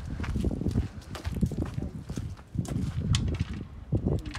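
Footsteps on frozen, snow-patched ground: a run of irregular steps.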